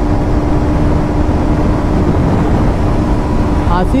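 KTM RC125's single-cylinder engine holding one steady tone at constant part throttle at highway speed, under heavy wind rush over the microphone. A man starts talking just before the end.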